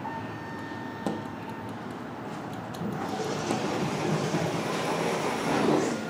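ThyssenKrupp hydraulic elevator running after a floor button is pressed: a click about a second in, then a steady mechanical rumble that grows louder from about three seconds in as the car gets under way.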